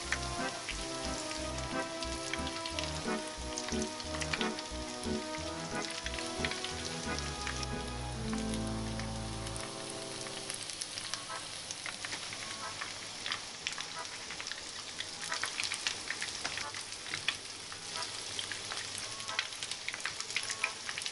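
Breaded surimi patties frying in plenty of oil in a pan: a steady sizzle with many sharp crackling pops. Background music plays over the first half and stops about halfway through.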